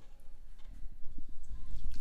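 Hot whey and soft cheese curds pouring from a stainless steel Instant Pot inner pot into a cheesecloth-lined strainer, splashing louder from about halfway in.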